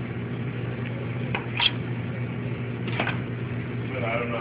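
A steady low mechanical hum, with a few short clicks and knocks from a knife and fish being handled on a plastic cutting board: a pair about a second and a half in, and another near three seconds in.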